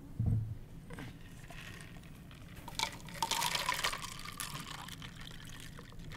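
Water poured into a cup for about two seconds, a little past the middle, its pitch rising as it fills. A low thump comes near the start.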